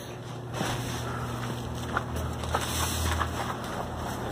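A steady low engine hum with some wind noise on the microphone, and a few faint knocks about halfway through.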